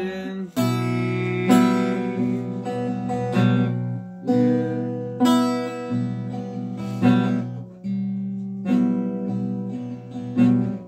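Acoustic guitar playing a slow, spooky-sounding chord progression. Each chord is struck about once a second and left to ring out before the next.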